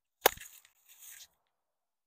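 Sharp crack of a hurley striking a sliotar, with a brief noisy tail, followed by a fainter hiss about a second in.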